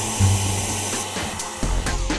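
Handheld hair dryer blowing steadily, its motor running with a hiss of air, over background music.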